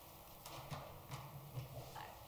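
Footsteps on a hard floor: a few sharp, clicking steps about half a second apart as a person walks up to a podium.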